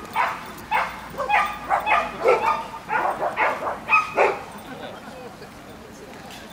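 A small terrier barking repeatedly, about a dozen quick barks in the first four seconds, which stop a little past four seconds in.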